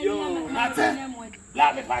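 Talking voices in the foreground over a steady, high-pitched trill of crickets.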